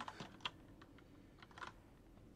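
Faint, irregular keystrokes on a computer keyboard: a handful of separate clicks as a timestamp is typed.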